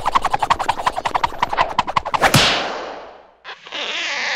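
Cartoon sound effect of something being forced through a drinking straw: a fast rattling run of pulses that ends about two seconds in with a sudden loud burst. A short hissing splash follows near the end.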